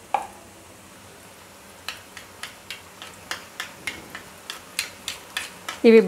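Gram-flour batter dripping through a perforated ladle into hot oil, the boondi sizzling steadily. From about two seconds in, a metal spoon taps against the ladle about three times a second to push the batter through.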